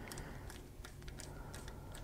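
Faint, irregular small clicks of a screwdriver turning the screw in the steel butt plate of a Swiss K31 rifle's wooden stock.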